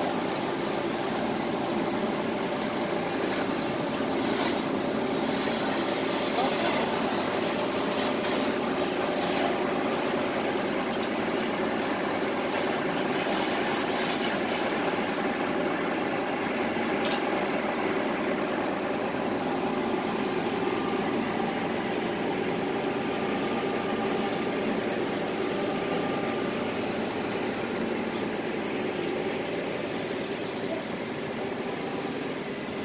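Concrete mixer truck's engine running steadily with the drum turning while concrete is discharged down the chute, with a few scattered clicks and scrapes.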